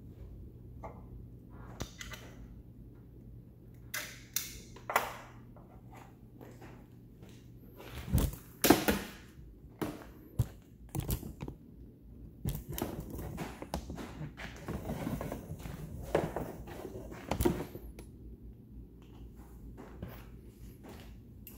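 Irregular knocks, clicks and clunks of hand tools and a compression-tester hose being handled in a car engine bay, over a steady low hum.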